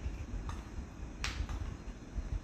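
Spoon clinking against a small bowl while scooping ice cream: a faint click, then a sharper one about a second in.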